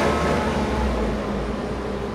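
Steady low background rumble with an even hiss above it, easing slightly in the second half, and no speech.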